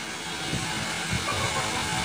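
Steady background hiss with a low buzz and a few faint, muffled low bumps; no clear sound event.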